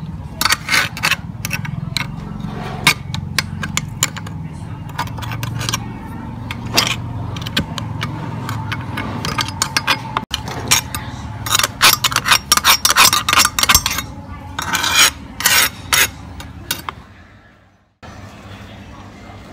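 Ground crumbs being scraped out of the open barrel of a hand-fed meat grinder with a spoon and a stick: many quick scrapes and metal clinks against the barrel, thickest in the second half, over a low steady hum. The sound fades out just before the end.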